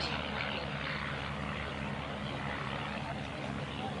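Propeller-driven Van's RV-8 aircraft with Lycoming piston engines flying overhead in formation, a steady engine drone.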